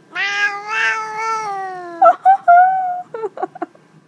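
Domestic cat meowing: one long drawn-out meow that slowly falls in pitch, then a shorter, higher meow and a few brief chirps near the end.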